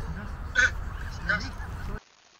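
A man laughing in two short bursts, the first about half a second in and the second a little under a second later, over a steady low rumble of wind on the microphone.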